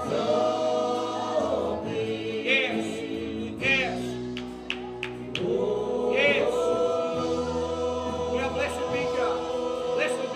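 Live church worship band performing a song: several voices singing together in long held notes over electric guitars and band accompaniment, with a few short percussive hits about four to five seconds in.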